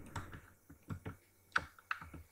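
Computer keyboard typing: an uneven run of keystroke clicks as a word is typed.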